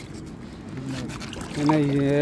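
A man's voice singing or humming a drawn-out, wavering tune: it drops low for the first part and comes back strongly about a second and a half in.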